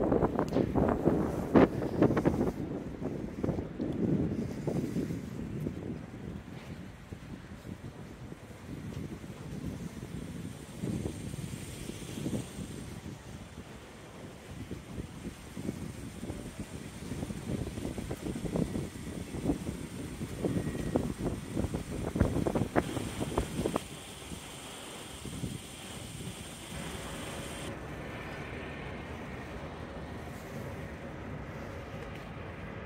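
Wind buffeting the microphone in irregular gusts, strongest near the start and again a little over twenty seconds in, then easing to a steadier low rush.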